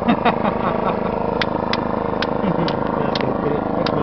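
An engine running steadily at idle, with voices in the background and a series of sharp clicks from about one and a half seconds in.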